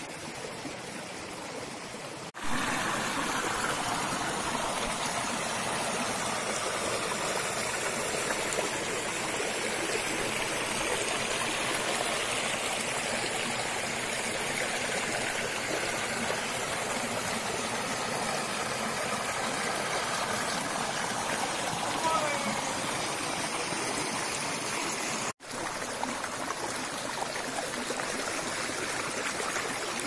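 Shallow rocky stream running over stones and boulders: a steady rush of water. The sound breaks off abruptly twice, a couple of seconds in and again near the end.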